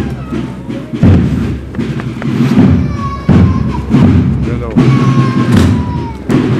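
Military bugle-and-drum band playing a processional march: heavy drum beats roughly once a second under held bugle notes.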